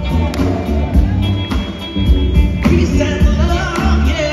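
Live soul band amplified through a PA: electric guitar, electric bass and drums keeping a steady beat, with a woman singing over it in the second half.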